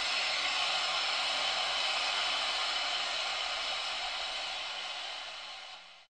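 Steady hiss of white noise, like static, fading out over the last two seconds.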